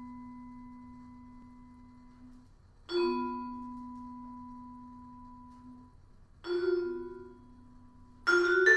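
Vibraphone played slowly with mallets, one note at a time. Each note rings steadily for a few seconds and then stops short as it is damped. A held note is cut off about two seconds in, a new note is struck about three seconds in, and two notes are struck together near the end.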